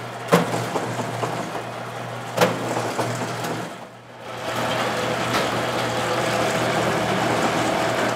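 Bakery dough-rolling machine running with a steady motor hum, with two sharp knocks in the first few seconds. The sound dips briefly about four seconds in, then runs on louder and steady.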